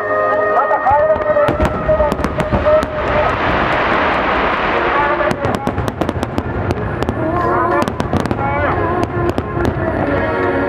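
A wide barrage of aerial firework shells bursting again and again with sharp reports from about a second and a half in, and a dense crackle swelling in the middle. A woman's singing over slow music is heard at the start and again near the end.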